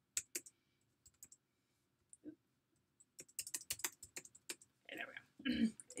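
Computer keyboard typing: a few scattered keystrokes, then a quick run of keys about three seconds in as values are entered into a spreadsheet.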